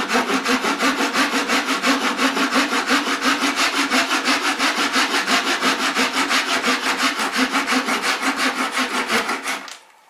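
Hand sawing through a small piece of wood with a gent's saw (small backsaw), quick even push-and-pull strokes at about three a second, cutting a mitre joint line. The sawing stops near the end.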